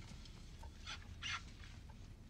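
Quiet room tone with a few faint, short noises, the clearest two about a second in.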